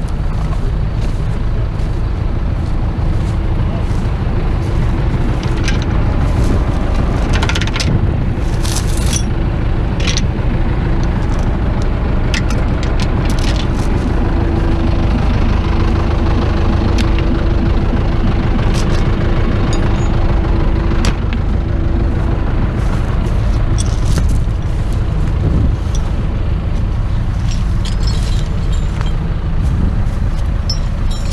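Diesel farm tractor engine running steadily at close range. A steady hum stands out for several seconds in the middle, and there are occasional light clicks and knocks.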